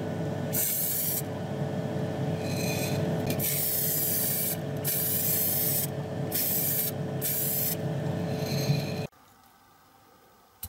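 Paint being sprayed onto a small model part in repeated short bursts of hiss, over a steady hum. The sound cuts off suddenly about nine seconds in.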